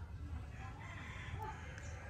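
A rooster crowing once, faint and drawn out for just over a second, over a steady low rumble.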